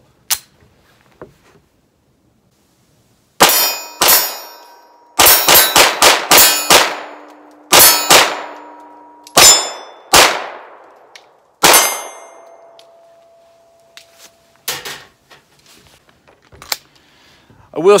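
SAR B6C 9mm compact pistol firing about a dozen shots in short strings, with steel target plates ringing after several hits. A few light clicks follow near the end.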